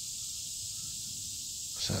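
Quiet, steady outdoor ambience: an even high hiss with a low rumble underneath, and a man's voice starting just before the end.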